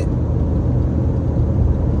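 Steady low rumble of a car being driven, heard inside the cabin: engine and tyre road noise.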